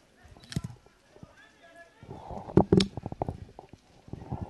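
Pitch-side sound of an amateur football match: faint shouts from players, a sharp knock about half a second in, then a cluster of loud thuds and knocks from about two seconds in.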